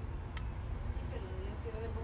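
Steady low background rumble with a single sharp click about a third of a second in, and a faint voice in the background in the second half.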